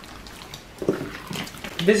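Hands squeezing and kneading sticky homemade slime in a plastic tub, with short, irregular wet squishing sounds. A voice starts near the end.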